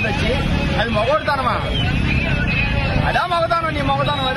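Street traffic: motorcycle, scooter and auto-rickshaw engines running and passing, a steady low rumble that is louder through the middle, under a man's voice.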